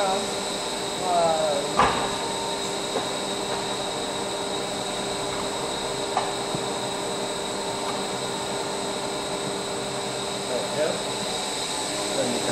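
Heavy steel fire door of a wood-chip biomass boiler swung shut, closing with a single clunk about two seconds in, over the steady hum of the running boiler plant with several constant tones.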